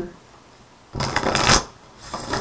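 A deck of reading cards being shuffled by hand: one short burst of crackling card noise, about half a second long, a second in.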